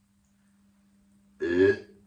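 A pause in a man's speech, then one short vocal sound from him about a second and a half in, an utterance the transcript does not catch.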